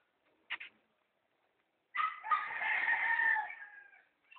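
A rooster crowing once, a long call of nearly two seconds starting about two seconds in and sliding down in pitch at its end. It is preceded by a brief high sound about half a second in.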